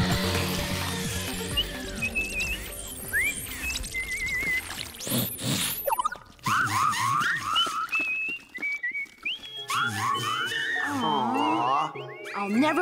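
Cartoon soundtrack music with high, chirpy whistling from the jiggler creatures: short rising glides, trills and stepped little phrases, with one big swooping whistle about halfway through.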